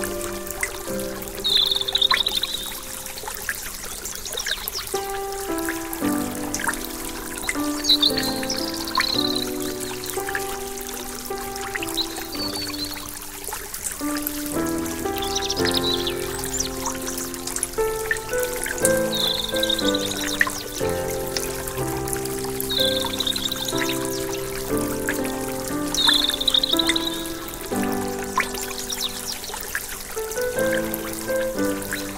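Calm, slow instrumental music with held notes, laid over the steady rush and trickle of a small rocky stream. Short high chirps come every few seconds.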